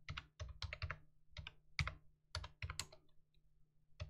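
Quiet typing on a computer keyboard: about a dozen separate keystrokes at an uneven pace as a short command is typed in and entered.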